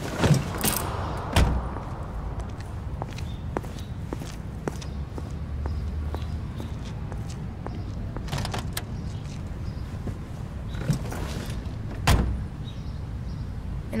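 Car doors thumping shut, three sharp knocks spread across the stretch, over a steady low rumble of a car, with some brief rustling in between.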